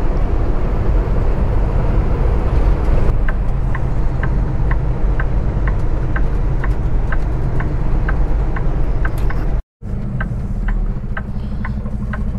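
Steady engine and road noise inside a semi-truck cab while driving. From about three seconds in, the turn signal ticks about twice a second. The sound cuts out for an instant near the end.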